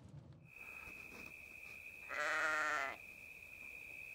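A single farm-animal bleat, a little under a second long, about two seconds in. A thin, steady high-pitched tone runs beneath it.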